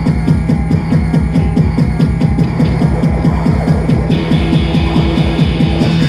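Live electro-punk band playing loud, fast music: electric guitar and keyboards over a driving, evenly pulsing beat. A higher layer of sound joins about four seconds in.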